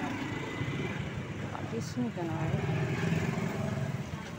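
Street traffic noise: scooter and motorcycle engines running, with people's voices mixed in.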